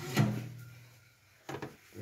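A low, steady hum on one pitch, fading away over about a second, then two light knocks near the end.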